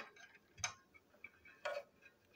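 Two short, sharp clicks about a second apart from a plastic toy train tender chassis and its wheelsets being handled.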